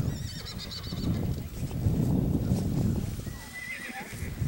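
A horse loping on soft arena dirt, its hoofbeats mixed with a low rumble. A horse whinnies with a high, wavering call in the first second, and a short rising call comes near the end.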